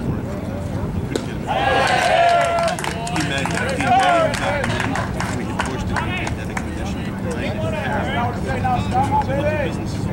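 Voices calling out and chattering around a baseball diamond in two stretches, starting about a second and a half in and again near the end, over a steady low outdoor rumble.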